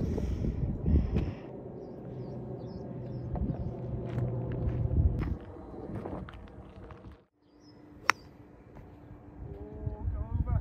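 Outdoor rumble with a steady low hum for the first five seconds, breaking off to silence about seven seconds in. About eight seconds in comes a single sharp crack of a golf club striking a ball.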